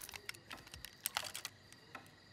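A string of small, sharp clicks and taps at irregular intervals, with a quick cluster just past the middle: hard objects being handled on a desk.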